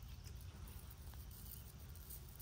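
Faint dry rustle and light ticking of bearded wheat heads and their awns shaken by hand.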